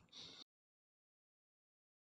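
Near silence: a faint trace of room noise that cuts off about half a second in, then digital silence.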